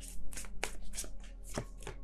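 A deck of tarot cards being shuffled by hand between draws: a quick, even run of short card slaps, about five a second.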